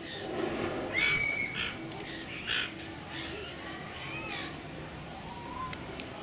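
Silver gulls calling: four short calls, the first about a second in and the last after about four seconds.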